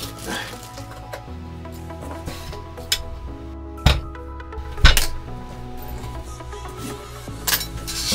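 Background music, over which a few sharp knocks and clinks of the aluminum keyboard case parts being lifted apart and set down. Most of them fall in the middle of the stretch and the loudest is about five seconds in, with one more near the end.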